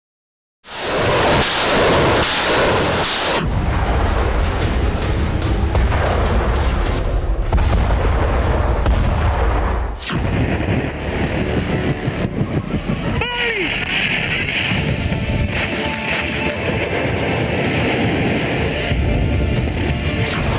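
Dramatic news-promo music laid over explosion-like booms and blasts. About ten seconds in the sound changes to a war soundscape of continuous rumbling and blasts, with a falling whistle about three seconds later.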